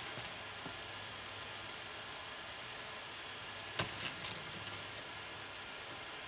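Steady low hiss with one sharp knock about four seconds in and a few lighter taps just after it, from painting materials being handled as the mat board is repositioned.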